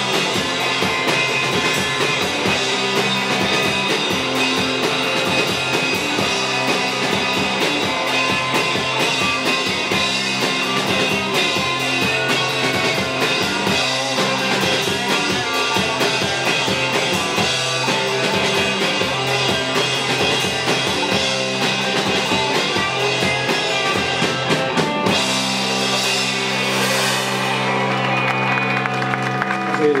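Rock band playing live without vocals: electric guitars, bass guitar and drum kit. About 25 seconds in the drums stop and the guitars and bass hold ringing chords.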